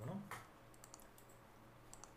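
A spoken word at the start, then a few faint computer mouse clicks, a cluster about a second in and one more near the end, over a low steady hum.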